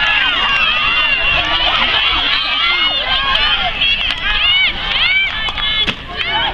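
A crowd of many high-pitched voices shouting and cheering over one another, with a brief dip near the end.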